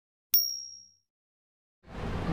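A single bright, high-pitched bell ding, the notification-bell sound effect of a subscribe-button animation, which rings and fades out within about half a second.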